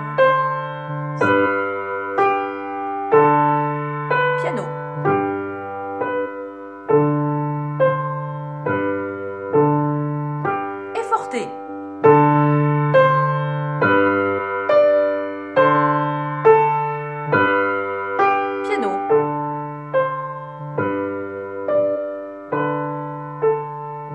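Upright piano playing a simple, repetitive beginner étude with both hands: a right-hand melody over left-hand bass notes on G and D, in half and quarter notes. The phrases alternate between loud and soft, two bars forte and two bars piano.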